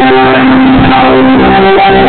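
Live band music at high volume, with held keyboard chord notes over guitar and rhythm section. The recording is dull, with no highs.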